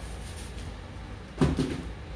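Cardboard shipping box being handled: one short, sudden knock-like sound about one and a half seconds in, with a few faint ticks after it, over a low steady background.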